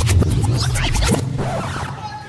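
Sound effects in a dog-dance routine's music track played over an arena PA: a quick run of sliding, rubbing sounds and clicks, easing about a second in to a quieter passage with a few held tones.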